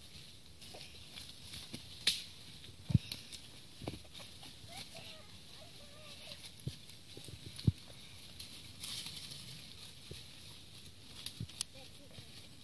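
Goats and a child walking over a slope of dry fallen leaves: quiet, scattered rustles and sharp snaps of hooves and feet in the leaf litter, with a short cluster of snaps near the end.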